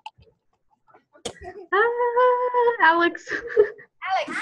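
A sharp click about a second in, then a voice holding one long steady note that drops to a lower pitch near the end.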